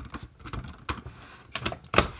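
Hard plastic toy parts of a G1 Powermaster Optimus Prime clicking and clacking as they are handled and fitted together, a series of irregular small clicks with a sharper one near the end.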